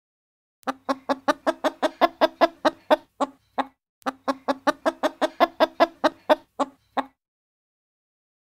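A hen clucking rapidly, about five clucks a second, in two runs of roughly three seconds each with a short break between them.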